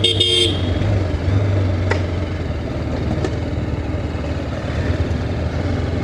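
TVS Apache RR310's single-cylinder engine running steadily at low revs while riding slowly. A short horn toot sounds right at the start.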